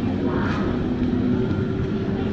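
Shopping-mall ambience: a steady low rumble with indistinct voices of passing shoppers.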